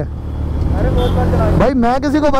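Motorcycle engines running steadily with a low drone while riding alongside each other, with a person talking near the end.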